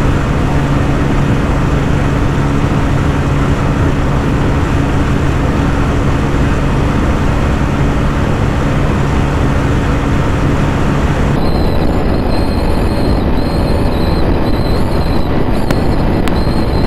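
Bajaj Pulsar N150's single-cylinder engine held steady at high revs in fifth gear at its top speed, unable to gain, under heavy wind rush on the onboard microphone. About eleven seconds in, the sound cuts to the TVS Apache RTR 160 4V's onboard audio, with its engine and wind at top speed.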